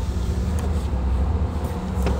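Car engine running, a steady low hum heard from inside the car.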